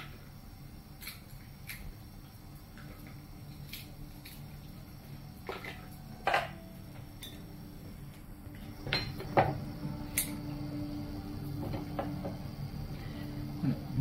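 Kitchen knife and crab legs clicking and knocking on a wooden cutting board as grilled crab legs are cut, with a few louder knocks about five to ten seconds in, over a low steady hum.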